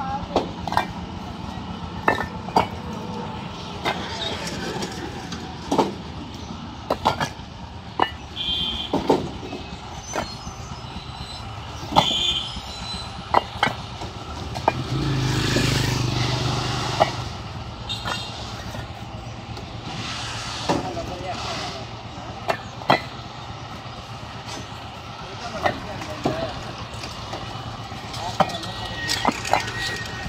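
Fired clay bricks clacking against one another as they are stacked by hand, in sharp, irregular knocks every second or two. In the middle a passing motor vehicle swells up and fades.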